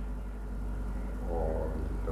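A steady low electrical hum, with a man's faint, low, wordless vocal murmur about halfway through, lasting under a second.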